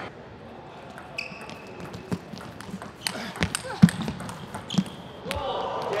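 Table tennis rally: the plastic ball knocking off rubber paddles and the table in an irregular run of sharp clicks, the loudest a little under four seconds in. Short squeaks come from shoes on the court floor.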